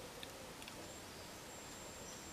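Faint, steady high-pitched beep from the small ferrite transformer of a transistor blocking (relaxation) oscillator, starting about a second in. The circuit has dropped into oscillating at an audible frequency, which the builder puts at around 14 kHz.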